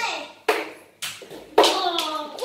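Children shouting, with a sharp smack about half a second in as a small sticky ball hits the whiteboard, a fainter click just after, and a loud shout near the end.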